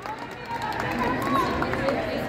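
Background chatter of many voices in a large gym hall, with a few faint clicks.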